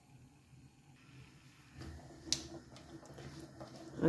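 Faint sizzling of cubed potatoes in oil in a tagine on a lit gas burner, starting to fry, with small crackles from about two seconds in and one sharp click.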